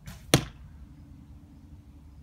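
A feather-fletched cedar arrow from a 45 lb recurve bow rushes briefly through the air and strikes a cardboard-box target with one sharp smack about a third of a second in.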